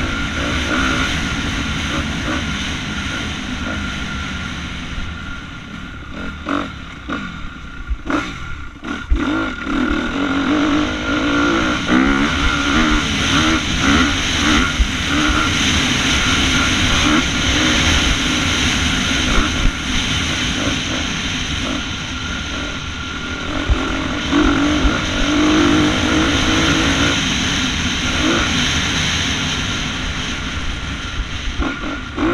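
2016 Honda CRF250R's single-cylinder four-stroke engine heard onboard while riding a motocross track, revving up and down with the throttle, with a brief let-off about eight seconds in.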